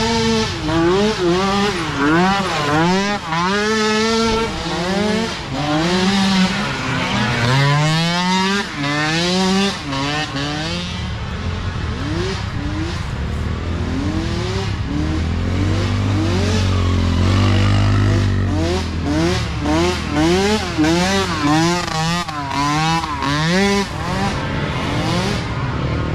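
Several small micro ATV engines racing, their pitch rising and falling about once a second as the riders blip the throttle over and over, the sounds of different machines overlapping. A deeper, steadier drone joins in the middle.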